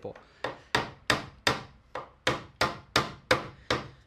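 Claw hammer driving a cable staple into a wooden stud to hold Romex cable to the framing: a run of about a dozen quick strikes, roughly three a second.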